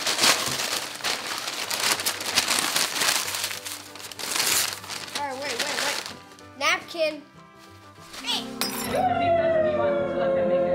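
Paper fast-food bags and wrappers crinkling and tearing as they are ripped open, for about six seconds. Then brief voices, and near the end music comes in.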